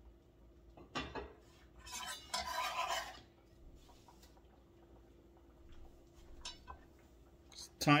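Cookware clatter at a soup pot: a sharp clink about a second in, then about a second of scraping and stirring in the pot as chopped green onions go in, with a few small taps after. A faint steady hum runs underneath.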